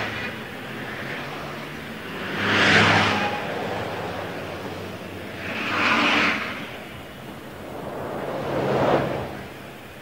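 Cars passing one after another on a street, each a rising and falling whoosh, about one every three seconds, over a faint low steady hum.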